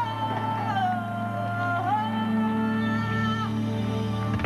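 Live rock band music: a lead line holds long notes and slides between pitches over a steady low drone.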